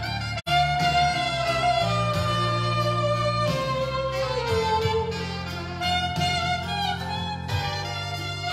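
Saxophone playing a melody of long held notes that slide between pitches, live over a backing track with a steady bass line. The sound drops out briefly about half a second in.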